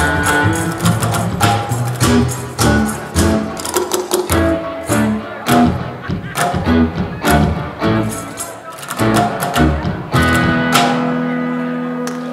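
Live string-band instrumental on cigar box guitar, a homemade one-string box bass and a junk-percussion drum kit, playing in a choppy, rhythmic groove. About ten seconds in they hit a final chord and let it ring.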